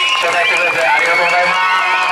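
Voices: a man talking over a microphone amid many overlapping audience voices.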